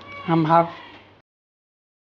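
A man's voice says one short word, then the sound cuts off abruptly to dead silence a little over a second in.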